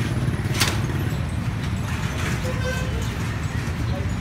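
Small single-cylinder motorcycle engine idling with a steady, fast low pulsing, and a sharp click about half a second in.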